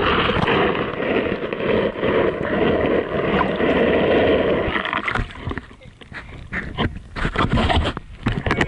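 Lake water sloshing and splashing against an action camera held at the waterline and dipped under the surface: a dense wash of water noise for about five seconds, then quieter, muffled underwater sound with scattered knocks and clicks against the housing.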